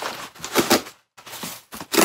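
Brown kraft packing paper crinkling and rustling as it is pulled out of a cardboard shipping box, in a few short bursts with brief pauses between.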